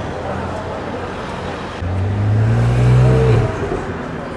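Street traffic noise with a car engine accelerating past. Its low tone starts about two seconds in, rises a little in pitch and fades out about a second and a half later.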